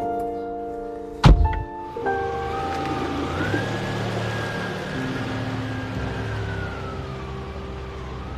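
A car door shuts with a single loud thunk about a second in. Then a Volkswagen sedan's engine runs as the car pulls away, with a whine that rises in pitch and falls again near the end. Soft background music plays under it.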